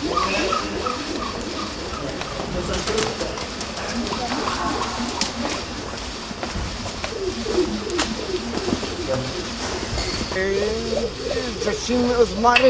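Pigeon cooing, mixed with indistinct voices.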